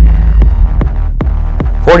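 Deep, steady low rumble of a slow-motion bullet-flight sound effect, with a few faint ticks over it.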